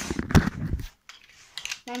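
Plastic Lego pieces clicking and knocking as they are handled, mixed with rumbling handling noise from the phone, busy for the first second. A few light clicks follow near the end.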